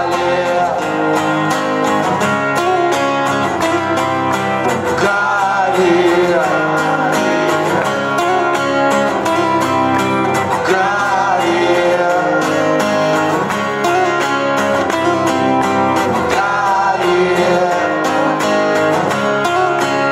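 A man singing a song, accompanied by two strummed acoustic guitars, in a live concert performance.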